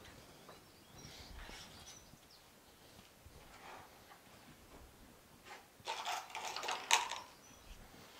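Quiet workshop with faint handling sounds as a timber roof section is pressed down onto a tin sheet. About six seconds in comes a brief clatter and rustle that ends in a sharp knock, as a hammer and nails are picked up from the workbench.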